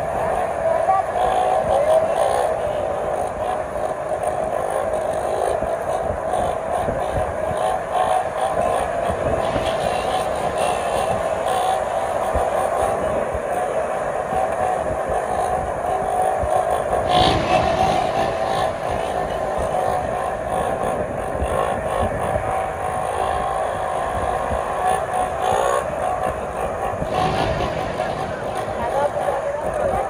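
Several small motorcycle engines running together as riders hold wheelies. The engines give one continuous, wavering note.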